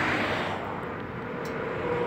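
Road traffic noise from vehicles passing on a road: a steady rushing that fades about a second in and builds again toward the end, with a faint steady hum in the second half.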